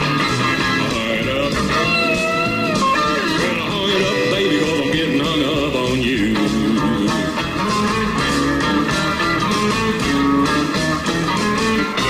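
Live country band playing an instrumental break: a steel-guitar-style lead with gliding, bending notes over upright bass and acoustic guitar rhythm.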